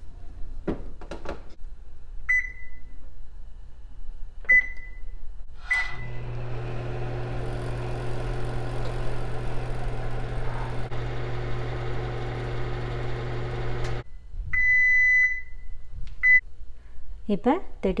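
Microwave oven being set and run: three short keypad beeps, then the oven running with a steady hum for about eight seconds, which cuts off suddenly. A longer beep and then a short one follow.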